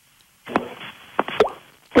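Telephone line of a call-in caller opening up: after a brief hush, a thin, band-limited line hiss with a few sharp clicks or pops, just before she starts to speak.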